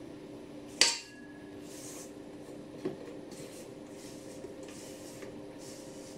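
A single metallic knock on a stainless steel mixing bowl about a second in, ringing briefly, then a lighter tap near three seconds. After that, faint soft scraping as beaten egg whites are scraped out of the mixer bowl.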